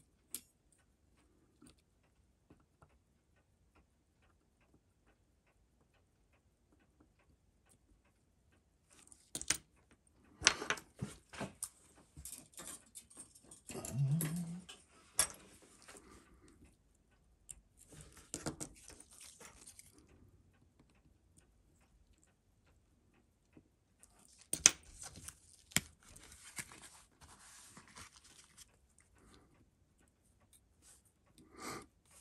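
Faint clicks and scraping of steel tweezers handling small parts of a mechanical watch movement, in two spells, the first about nine seconds in and the second near the end, with a short low rising sound about halfway.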